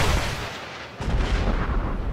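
A booming impact sound effect about a second in, with a low rumble that lingers after it. It follows the fading tail of an earlier sound.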